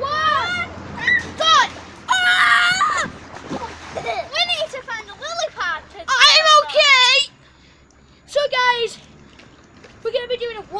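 Children shrieking and shouting in high voices while water splashes in an inflatable paddling pool, with a short lull near the end.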